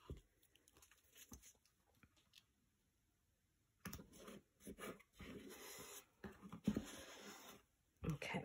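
Faint rustling and rubbing of hands smoothing an adhesive silkscreen transfer sheet down onto a box frame, starting about halfway through after a stretch of near silence.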